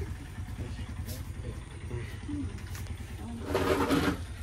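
A low, steady motor drone with an even pulse, under faint talk; a voice speaks louder near the end.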